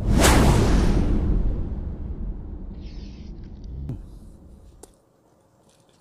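A sudden loud whoosh with a deep rumble underneath, fading away over about five seconds.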